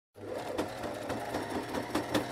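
Sewing machine running at a steady pace: rapid, regular mechanical clicking, about five a second, over a low hum. It starts suddenly just after the start.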